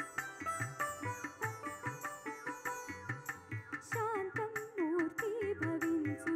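A woman singing an Indian song into a microphone over instrumental accompaniment with a steady drum beat. The first part is mostly instrumental, and her voice comes in with wavering, ornamented phrases about four seconds in.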